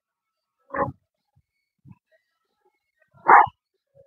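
A man's short, forceful exhalation grunts, twice, about two and a half seconds apart, one on each rep of a weighted crunch/leg raise as he breathes out on the way up.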